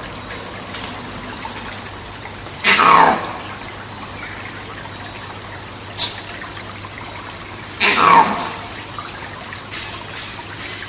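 Two loud monkey screams, each about half a second long and falling in pitch, about five seconds apart, over a steady background hiss of jungle ambience. A single sharp click comes between them.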